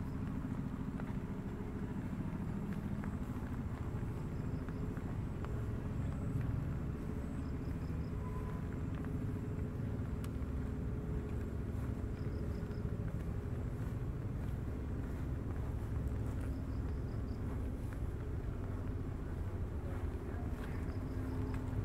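Open-air ambience with a steady low rumble. A faint high chirp recurs in quick groups of three or four notes about every two seconds.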